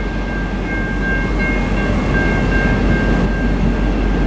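V/Line N class diesel-electric locomotive N466 rumbling as it pulls slowly into a station, hauling its carriages. A steady high-pitched squeal sits over the rumble from about half a second in until near the end.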